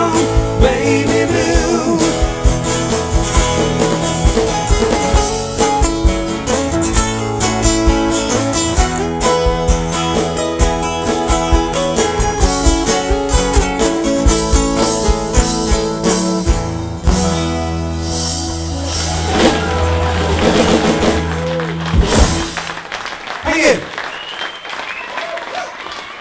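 Live acoustic band ending a song: a briskly strummed acoustic guitar with bass and voice, closing on a held chord about 17 seconds in that rings and fades, followed by applause in the last few seconds.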